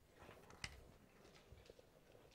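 Near silence, with faint handling clicks from the wire leads of a small bulb being connected to a hand-cranked generator; one click about two-thirds of a second in stands out.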